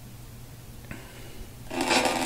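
Faint steady hum with a soft click about a second in; near the end, music fed into the computer through line-in starts playing with a crackle over it.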